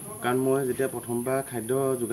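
A man talking over a steady, high-pitched insect drone, typical of crickets or cicadas.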